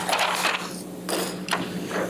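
A few short knocks and clatters picked up by courtroom microphones, over a steady low hum.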